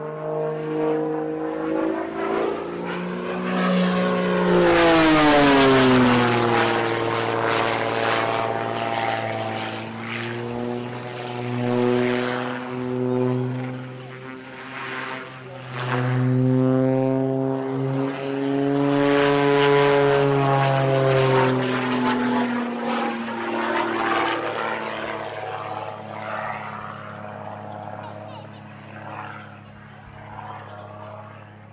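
Extra 330 aerobatic plane's piston engine and propeller passing overhead during aerobatics. The pitch drops sharply a few seconds in as it passes at its loudest, climbs again mid-way, drops once more, and the sound fades toward the end.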